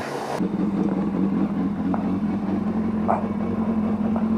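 Pressure-washer spray hissing against a motorbike, cut off about half a second in, leaving a steady low machine hum.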